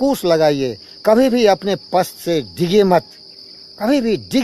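A steady, high-pitched chorus of insects runs under a man's speech. The voice pauses briefly near the end and then starts again.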